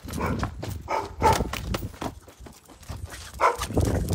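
A dog barking in several short, loud bursts: a few close together in the first second and a half, then one more near the end.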